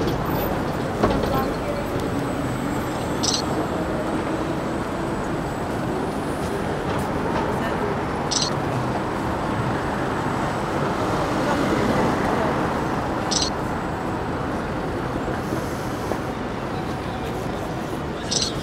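City street ambience: a steady wash of traffic with indistinct voices, and a short high click that repeats about every five seconds.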